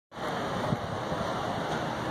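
Steady wind noise buffeting the microphone, a continuous low rumbling rush with no distinct events.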